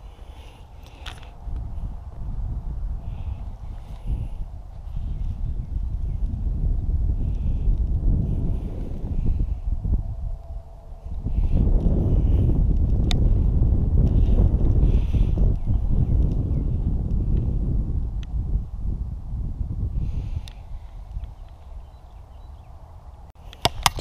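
Wind buffeting the camera's microphone: an uneven low rumble that grows much stronger about halfway through and eases again later, with a few light clicks.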